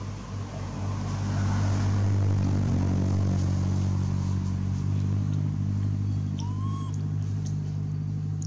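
A motor vehicle engine running steadily, a low hum that grows louder about a second in and then holds. A short high chirp sounds near the end.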